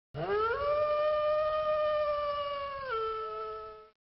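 A wolf howling once: the pitch rises at the start and holds steady, then drops to a lower note near the end before stopping.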